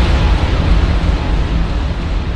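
Deep rumbling noise with heavy bass, the slowly fading tail of an explosion-like boom that hit just before.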